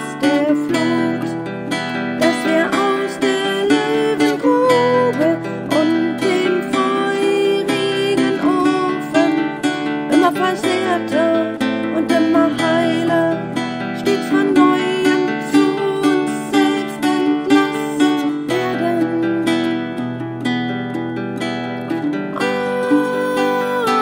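Solo acoustic guitar playing an instrumental passage of plucked notes and chords, steady and without pause.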